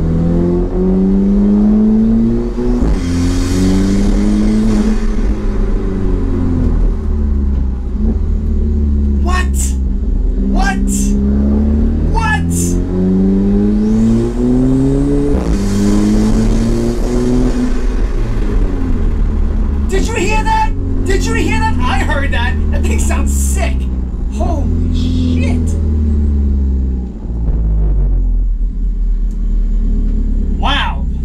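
Alfa Romeo 4C's 1.75-litre turbocharged four-cylinder heard from inside the cabin under repeated hard acceleration, its note climbing through each gear and dropping at every upshift. A hiss from the newly fitted cold air intake swells at the top of the two longest pulls, about three and fifteen seconds in.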